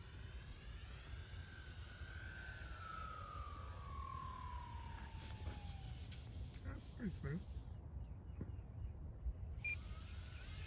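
Electric RC airplane's motor and propeller whine, a single tone that falls steadily in pitch over about five seconds as the plane comes in to land on snow, and ends as it touches down. A low steady rumble lies underneath, and a brief voice says "yeah" near the end.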